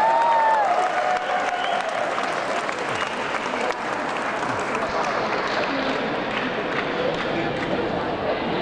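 Gala audience applauding steadily, with voices in the crowd and a single rising-and-falling call in the first second.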